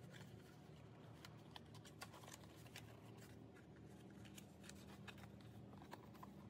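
Faint, scattered ticks and crackles of stiff cardstock being folded along scored lines and pressed into a box shape by hand, over near-silent room tone.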